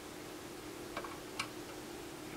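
Two faint ticks about half a second apart from a screwdriver working the wirewound full-scale adjustment inside an HP 3400A RMS voltmeter, over a faint steady hum.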